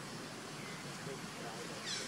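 A young macaque gives a brief high-pitched squeal near the end, over a steady outdoor hiss, with fainter calls earlier.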